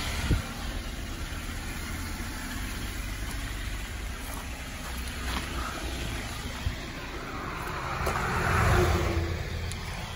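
Car engine idling close by, a steady low hum, with a swell of noise about eight seconds in.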